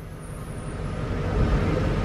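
1995 Buick Roadmaster's 5.7-litre LT1 V8 running as the wagon backs up in reverse, heard from inside the cabin, the low rumble growing louder over the two seconds.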